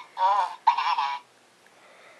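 McDonald's Dave Banana Babbler minion toy talking through its small speaker after its banana is pulled out: two short high-pitched babbles in the first second or so, then only faint handling.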